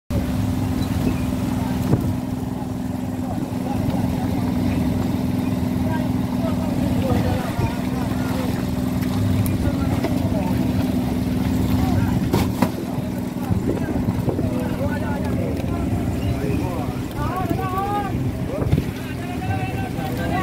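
Fishing boat's engine running with a steady low hum that weakens about two-thirds of the way in, with a few sharp knocks from fish and ice being handled on deck.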